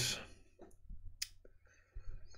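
A few faint, short clicks spaced apart in an otherwise quiet pause.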